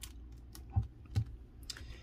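Hands handling paper and pressing on a scrapbook page on a craft desk: a few light clicks and taps, with two sharper knocks close together about a second in.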